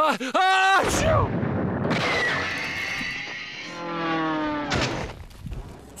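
A sudden loud blast like a gunshot about a second in, followed by a few seconds of noise with a whistle-like tone falling in pitch over it.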